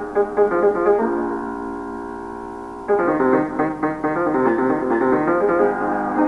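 Solo piano playing an Ethiopian melody. A quick run of notes gives way about a second in to a held chord that slowly fades, and then quick notes start again about halfway through.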